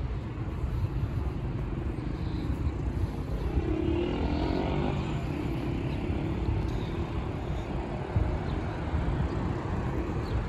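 City street traffic: a steady rumble of cars, with one vehicle's engine swelling as it passes around the middle and then fading.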